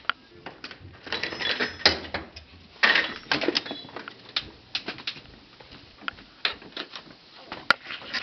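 Clicks and knocks of a door being opened and passed through, followed by irregular footstep-like knocks, with a denser clatter about one to three seconds in.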